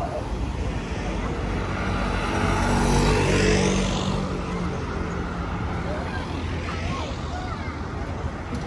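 A car passing close by on the road, its engine hum and tyre noise swelling to a peak about three seconds in and then fading, over steady street traffic and crowd chatter.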